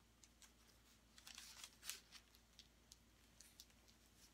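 Near silence, with a few faint, brief rustles and scrapes of a canvas and plastic-gloved hands moving against parchment paper, most of them between one and two seconds in.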